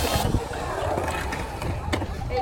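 Skateboard wheels rolling over a concrete bowl with a rough rumble, with a sharp click near the end and voices around.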